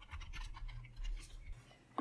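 Computer keyboard being typed on: a quick run of faint keystroke clicks as a short word is entered, stopping shortly before the end.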